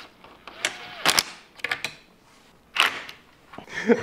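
Cordless drill driver briefly spinning a machine screw into a pre-tapped hole, a short whir that rises and falls, followed by a few sharp clicks and knocks of metal parts on the workbench.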